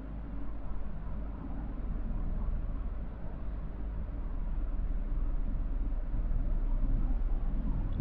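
Steady low background rumble and hiss, with a constant low hum underneath and no distinct events.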